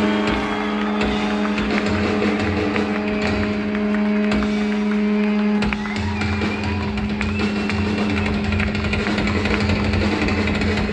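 Live rock band playing loud distorted electric guitar noise: a steady held droning pitch with noisy crackle over it and no singing. A deeper low rumble grows stronger about halfway through.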